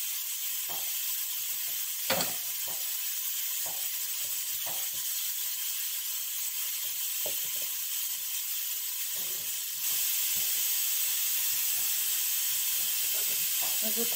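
Steady hiss, a little louder from about ten seconds in, with a few soft taps as tomato slices are laid onto lettuce on a plate.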